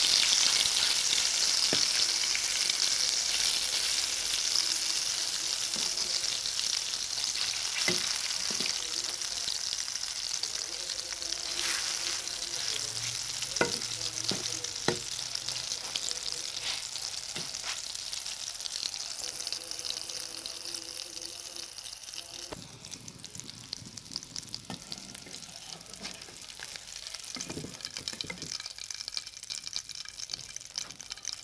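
Small-fish fritters sizzling in shallow oil in an aluminium kadai, with a perforated metal spatula scraping and tapping against the pan now and then. The sizzle slowly dies down over the stretch.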